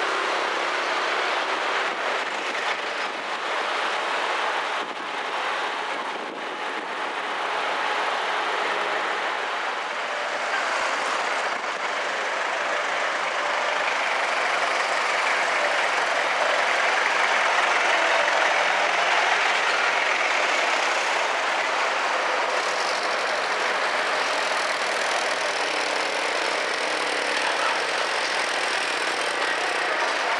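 Steady street traffic noise: engines of passing vehicles blending into a continuous rush with no single sound standing out, dipping briefly early and growing a little louder toward the middle.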